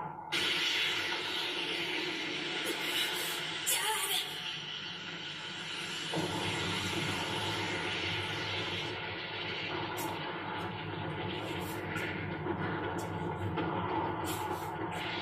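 Cartoon explosion and rumbling sound effects from an anime soundtrack, played through a television's speakers. The noise starts suddenly just after the start and stays dense and loud.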